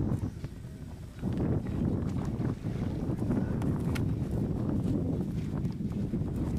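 Wind buffeting the microphone: a low rumble that picks up about a second in and carries on.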